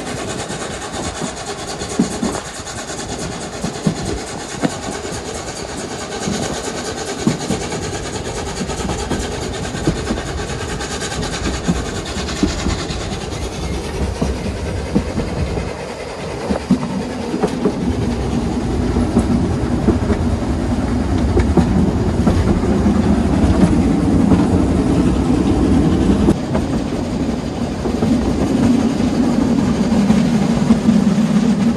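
Narrow-gauge steam railway coach running along the line, heard from its open end platform: wheels clacking over the rail joints and the carriage rumbling steadily, getting louder and heavier about halfway through.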